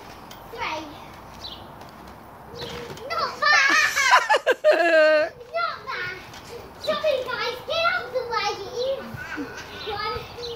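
Young children's voices at play, calling and chattering with no clear words, with one loud, high-pitched child's voice from about three to five seconds in.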